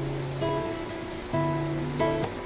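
Acoustic guitar playing a slow chord progression, with a new chord struck about half a second in and again about one and a half seconds in, each left ringing.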